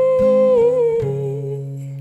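A woman's long wordless vocal note, held steady and then wavering and sliding down in pitch about halfway through before fading. Fingerpicked acoustic guitar notes ring underneath.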